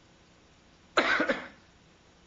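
A man's short double cough about a second in.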